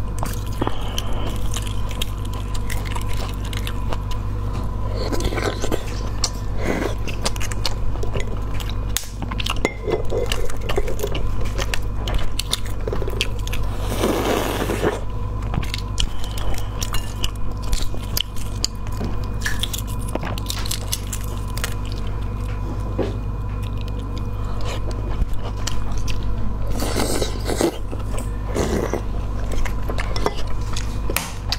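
Shells of cooked eggs cracking and being picked off by hand in many small, irregular crackling clicks, with bouts of chewing in between. A steady low hum runs underneath.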